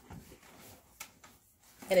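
Faint rubbing and rustling of a laptop being pushed into the back of a canvas tote bag fitted with an organizer, with a soft knock about a second in.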